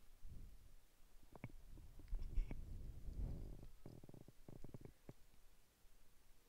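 Faint low thuds of feet stepping out to the side and back on a hard floor, with a scatter of short light clicks, several in a quick cluster near the end.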